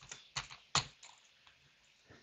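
Computer keyboard keystrokes, about four sharp taps in the first second.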